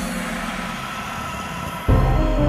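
A break in a children's song's backing track filled by a steady rushing noise with faint held tones beneath it. The music with its beat comes back abruptly just before the end.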